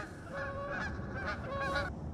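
A bird calling three times: short calls, each held on one pitch, about half a second apart.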